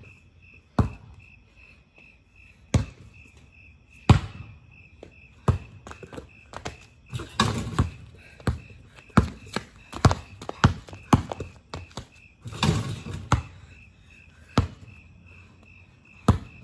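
A basketball bouncing on a concrete driveway, single bounces at first, then quicker dribbling of about one to two bounces a second in the middle. Crickets chirp steadily throughout.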